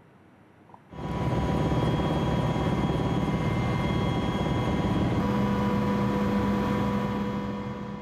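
Steady drone of an aircraft's engines heard from on board: a broad rumble with a few steady tones over it, starting about a second in.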